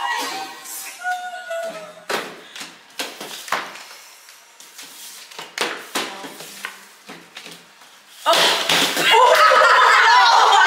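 Playing cards slapped and snapped down onto a cloth-covered table in a fast round of the card game Spoons: a run of sharp, irregular smacks. About eight seconds in, the players break into loud shouting and shrieks.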